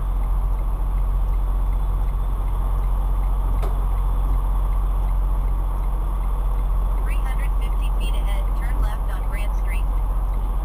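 The Detroit DD15 diesel engine of a 2016 Freightliner Cascadia heard from inside the cab, running with a steady low rumble as the truck moves slowly. There is a single click a few seconds in.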